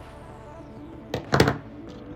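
Metal jewellery pliers set down on a countertop: a short, loud clatter a little past a second in, over faint background music.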